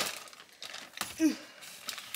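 Plastic packaging of a store-bought rotisserie chicken crinkling and clicking as the chicken is lifted out: a dense crackle at the start, then a few light clicks.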